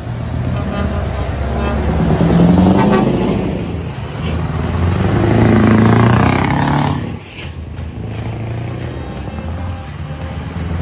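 Diesel engines of Scania truck tractor units pulling away one after another, with the nearest truck passing close by. The engine sound swells twice, loudest around five to six seconds in, then drops off sharply about seven seconds in.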